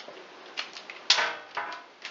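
Kitchen handling sounds from a plastic dough scoop and a parchment-lined baking tray as cookie dough is portioned: a few short clicks and clacks, the loudest and sharpest about a second in.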